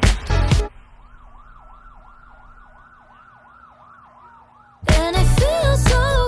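The pop song cuts out abruptly, leaving a faint emergency-vehicle siren yelping rapidly up and down, about three cycles a second, with a slower wail gliding up and down under it over a low steady hum. The loud music comes back in near the end.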